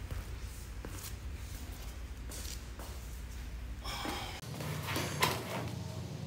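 Scattered knocks and clanks of a dumbbell being handled and set in place as a lifter gets into position on a bench, over a low room hum. About four and a half seconds in the hum cuts off and background music comes in, with a sharp knock just after.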